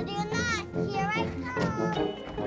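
A young girl's high voice making three sing-song calls that sweep up and down in pitch, over soft background music.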